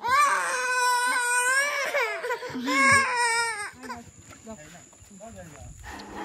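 A high-pitched crying wail from a person's voice: one long, wavering cry lasting about two seconds, a shorter one around the three-second mark, then it quietens.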